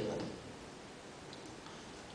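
A man's voice trails off into the hall's echo, leaving quiet room tone with a few faint ticks.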